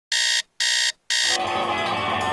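Digital alarm clock beeping three times, about two beeps a second, each a short electronic tone. Near the end music comes in and carries on.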